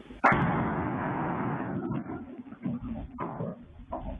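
An explosion: a sudden loud bang followed by about two seconds of rolling rumble that slowly fades, then two fainter thumps near the end.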